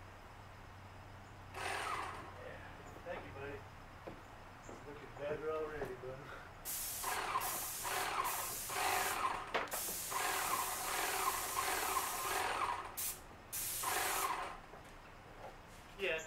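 Pressure washer spray hissing against wooden deck boards, with the pressure turned up: a short blast about a second and a half in, then a long run of spraying broken by a few brief stops, ending shortly before the end.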